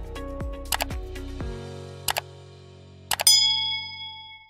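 Outro music with a steady drum beat that stops about a second and a half in, followed by three pairs of mouse-click sound effects and, near the end, a bright bell-like ding that rings out and fades. The clicks and ding are the sound effects of an animated subscribe button and notification bell.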